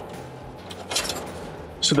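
Faint handling noise with one brief scrape about a second in, as a zippered fabric stove bag is opened and a small steel stove damper is taken out.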